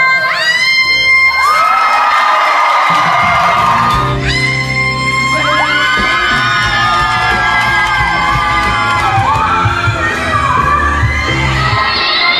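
Women belting long, high sustained notes around C6 in live musical-theatre recordings, short excerpts following one another, with an audience cheering and whooping underneath.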